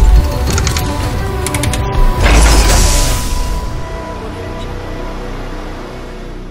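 Logo-intro sound design: a deep booming hit at the start and another about two seconds in, each with a whoosh, over music with mechanical clicking and ratcheting, then a ringing tone that slowly fades.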